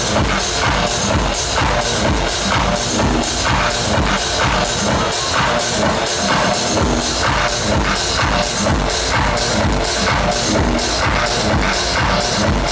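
Techno DJ set played loud over a club sound system, with a steady pounding kick drum and regular hi-hat ticks.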